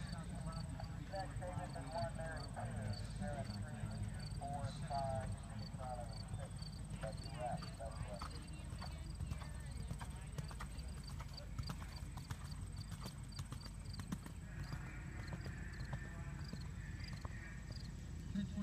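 Hoofbeats of a horse cantering on sand arena footing, muffled under a steady low rumble.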